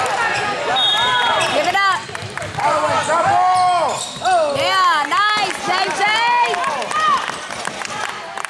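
Basketball sneakers squeaking again and again on a hardwood gym floor, short rising-and-falling squeals bunched through the middle, with a basketball bouncing and thudding on the floor.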